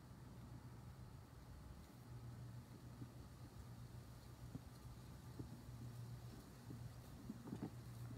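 Near silence: faint background with a steady low hum and a few faint ticks.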